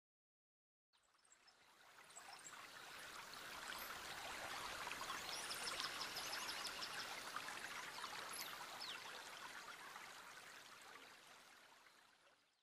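Running water like a stream or trickle, fading in about a second in, swelling in the middle and fading out near the end, with short high chirps or drips in the middle.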